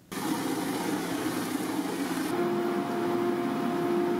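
Loud, steady machinery noise that starts abruptly, with a steady hum joining about two seconds in.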